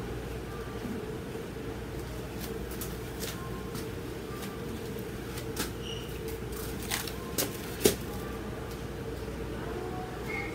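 Steady low room hum, with a handful of short knocks and clicks in the second half, the loudest about eight seconds in.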